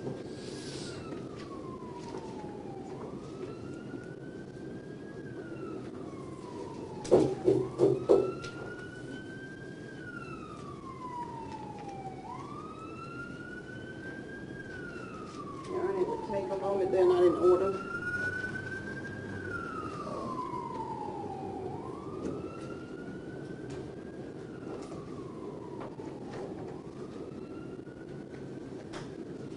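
Siren wailing, its pitch climbing slowly and then falling away in cycles of about four and a half seconds, over a steady low hum. Twice, a quarter of the way in and again just past halfway, a cluster of loud short low-pitched blasts breaks in; these are the loudest sounds.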